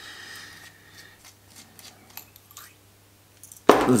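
The plunger of an Optimus Polaris Optifuel stove's fuel pump being pulled out of its barrel, its pump leather dried out. There is a faint scraping squeak for about the first second, then a few light clicks of the parts being handled.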